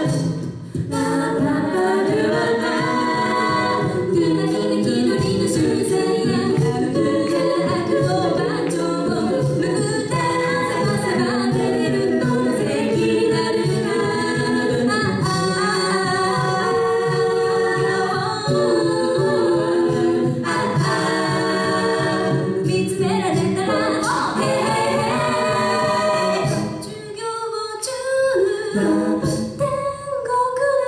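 A six-voice female a cappella group singing into microphones in close harmony over a steady beat. The sound thins out briefly about 27 seconds in, then comes back louder.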